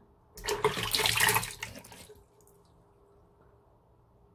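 Water splashing at a bathroom sink as a face is rinsed with the hands, one burst of about a second and a half that trails off, then only faint background.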